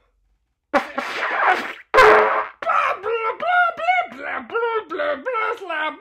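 A trumpet blown badly on purpose: after a short pause, two rough, noisy blasts, then a run of short wobbling notes that bend up and down in pitch, about three a second.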